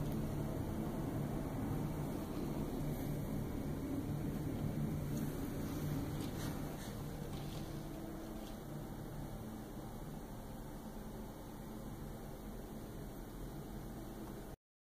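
Steady low outdoor rumble, the distant hum of city and building machinery heard from a high balcony, easing to a quieter indoor room tone about halfway through.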